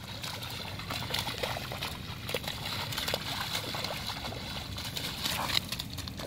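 A dog splashing and sloshing through a shallow rain puddle, with irregular splashes and water slapping as it ducks its head in and then runs through the water.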